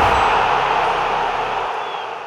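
Logo-intro sound effect: a broad rushing noise that slowly fades out, with a faint high ping near the end.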